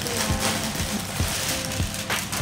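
Thin plastic shopping bag rustling and crinkling as hands rummage in it and pull clothes out, over background music with a steady beat.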